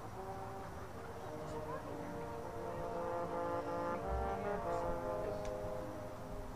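Marching band brass playing a slow, soft passage of held chords that shift every second or so.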